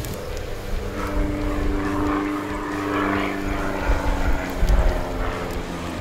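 A steady engine drone holding several even pitches, swelling slightly around the middle.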